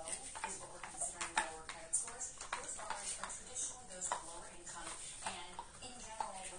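Indistinct background talk, a voice too muffled for its words to be made out, coming and going in short phrases.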